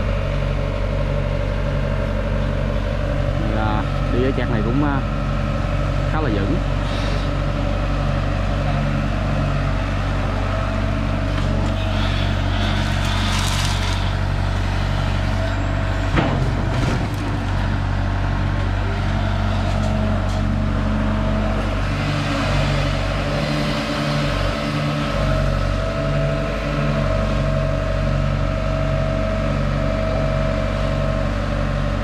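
Diesel engine of a Sumitomo S265F2 long-reach excavator running steadily under working load as the boom swings and digs. There is a single sharp knock about sixteen seconds in.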